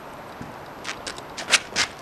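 Running footsteps: a quick series of sharp steps starting about a second in, the last two the loudest.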